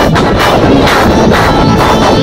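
Live band music played loud, with a drum kit keeping a steady beat of about two hits a second.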